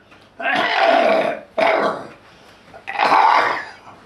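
An elderly man's hard, hoarse coughing fit: three long hacking coughs, the first and last about a second each, with a shorter one between.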